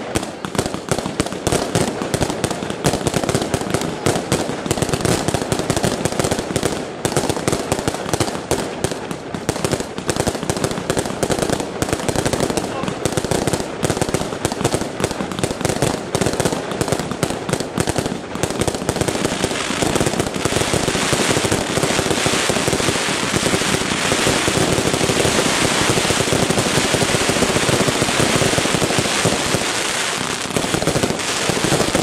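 Fireworks going off in a rapid, unbroken string of pops and crackles. About two-thirds of the way in, the crackle thickens into a louder, continuous dense crackling.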